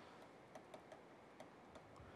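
Near silence with a few faint, irregular ticks: a stylus tapping and writing on a pen tablet.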